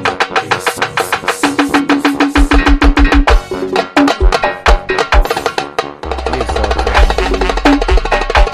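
Instrumental passage of a Brazilian paredão dance remix: fast, busy percussion hits with a held note, and a deep bass that comes in about six seconds in.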